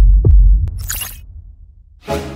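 Sound-design sting for an animated logo: loud, deep bass pulses with a falling pitch that fade away over about a second and a half, with a short swish about a second in.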